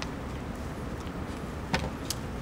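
Room tone of a lecture hall: a steady low hum with faint background noise, broken by one sharp click about three-quarters of the way through.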